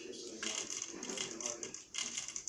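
Small plastic Lego pieces clicking and rattling against each other as hands handle a Lego building set, a rapid run of light clicks starting about half a second in.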